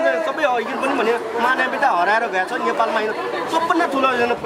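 Speech only: a man talking, with other voices in the background.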